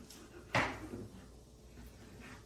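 A single sharp knock about half a second in, ringing off briefly: a knife striking through a slice of smoked brisket onto a plastic cutting board.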